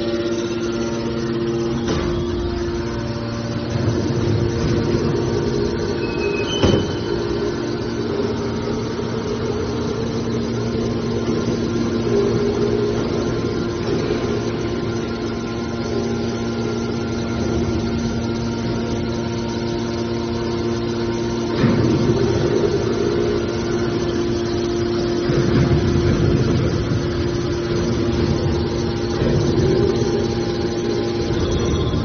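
Hydraulic power unit of an aluminum scrap baler, an electric motor driving a hydraulic pump, running with a steady hum, with a few sharp knocks, the clearest about a third of the way in and about two-thirds of the way in.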